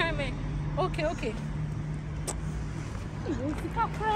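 Steady road traffic noise from the street, a continuous low hum and rumble, with a few brief fragments of a woman's voice over it. There is a single sharp click a little after halfway.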